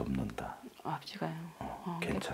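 Speech: a person talking quietly, with the words not made out.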